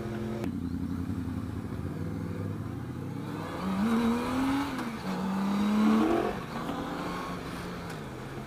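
Motorcycle engine accelerating, its pitch climbing about four seconds in, dipping at a gear change about a second later and climbing again, over steady wind noise.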